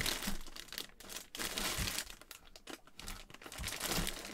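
Clear plastic bag around a folded football jersey crinkling as it is handled, in uneven crackles with quieter gaps.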